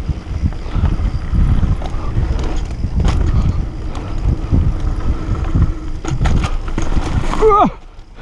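Enduro mountain bike running fast down a dirt forest trail: a loud, steady rumble of tyres on rough ground and wind noise, broken by a few sharp knocks and rattles from bumps.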